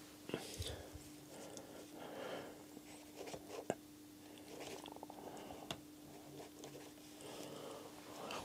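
Faint close-up handling sounds, with a few small sharp clicks (the clearest a little before the middle) and soft breath-like swells, over a steady low electrical hum.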